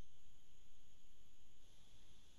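Quiet steady room tone from an open call microphone: a low hum and hiss with a few thin, faint high-pitched whines.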